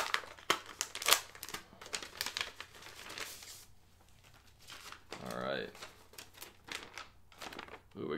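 Paper crinkling and rustling as a folded handwritten letter is handled and opened out, with a rapid run of sharp crackles in the first few seconds, a short lull, then scattered crackles.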